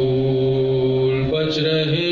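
A man's voice chanting soz, the Urdu elegy of mourning for Karbala, in long held notes; the pitch steps up about a second and a quarter in, with a brief hissed consonant just after.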